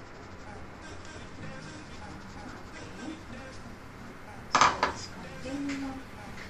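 Plastic sieve knocked against a ceramic bowl while sifting ground coffee: two sharp clacks close together about four and a half seconds in, over a quiet background.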